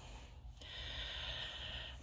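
A faint, drawn-out breath taken in, lasting about a second and a half before speech resumes.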